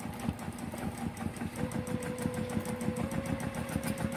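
Juki TL-2010Q straight-stitch sewing machine running steadily during free-motion quilting with the feed dogs dropped: the needle strokes in a fast, even rhythm. A motor whine comes in about a second and a half in and rises slightly in pitch near the end as the machine speeds up.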